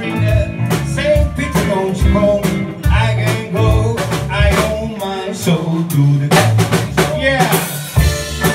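Live blues band playing, with electric guitars, electric bass and a drum kit, and a man singing over them.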